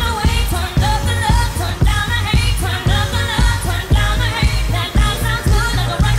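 A live pop song: a woman singing the lead over an electronic dance-pop backing track with a steady beat and heavy bass.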